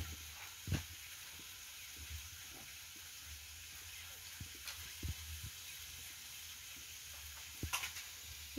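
Faint steady sizzle of food frying, with a few light knocks of utensils or dishes, about a second in, around five seconds in and near the end.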